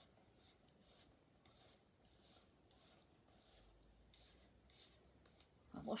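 A small soft-bristled baby hairbrush brushed through a reborn doll's hair: faint, short swishing strokes, about two a second.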